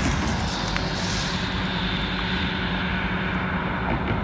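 Diesel locomotives of a Norfolk Southern freight, an EMD SD60E and SD40E, running with a steady low rumble and a held drone. A hiss swells about a second in and fades.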